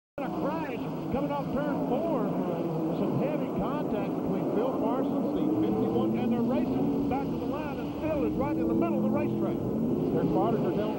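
NASCAR stock cars' V8 engines running at racing speed, under a big crowd cheering and yelling through a crash at the finish.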